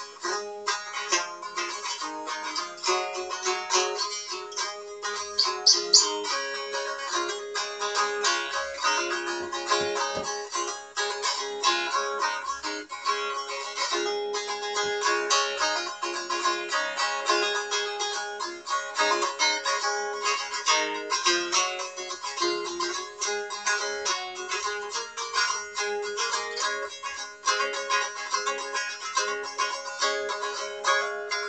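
Handmade mahogany Strumstick, a three-string fretted stick dulcimer in D-A-D tuning with Martin strings, strummed continuously. Quick strokes play a tune over a steady drone.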